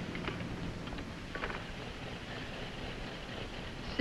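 Quiet, steady low rumble and hiss of background noise, with a brief faint higher sound about a second and a half in.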